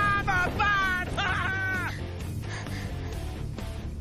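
Animated characters' high-pitched screams over dramatic film score music; the last cry falls in pitch and breaks off about two seconds in, leaving the music.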